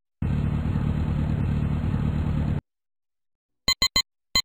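Cartoon sound effect of a van's engine running steadily for about two and a half seconds, then cutting off suddenly, followed near the end by three quick short beeps.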